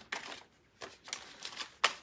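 Paper banknotes being handled: a few short, crisp rustles as dollar bills are picked up and slipped into a binder envelope, the loudest near the end.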